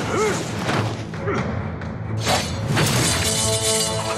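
Fight-scene soundtrack: dramatic music with sudden hits and weapon swishes, several sharp impacts in the middle, and the music swelling into sustained notes near the end.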